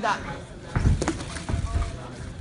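Three dull thuds from the kickboxers in the ring, the first two close together a little under a second in and the third about half a second later.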